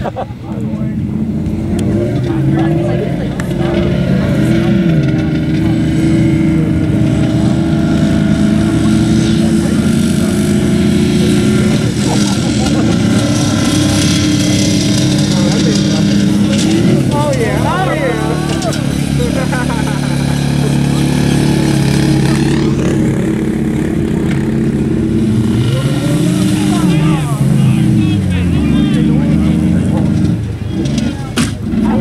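Demolition-derby cars' engines and a side-by-side UTV's engine running and revving, the pitch rising and falling several times, with voices over them.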